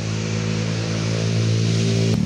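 An engine running steadily at idle: a low, even hum.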